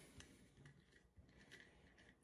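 Near silence, with a few faint clicks from a plastic utility knife handled in the hands.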